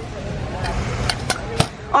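Stunt scooter's hard wheels rolling on concrete as the rider kicks along, with three sharp clacks in the second half.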